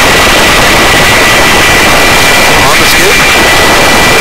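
Helicopter hovering, heard loud at the open cabin door: a dense, steady rush of rotor and engine noise with a steady high whine running through it.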